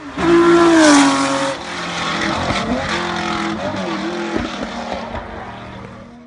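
Car engine sound effect: a loud rev about a second in whose pitch falls away, then the engine running on steadily with a few short blips, fading out near the end.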